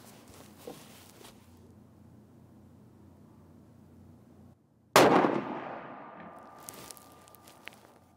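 A single shot from a Sako S20 Hunter .308 Winchester bolt-action rifle about five seconds in: a sudden loud crack that dies away in an echoing tail over about two seconds.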